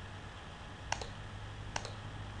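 Two computer mouse clicks, each a quick press-and-release, about a second and nearly two seconds in, over a faint steady low hum.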